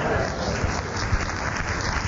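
Studio audience laughing and applauding, a steady crowd noise.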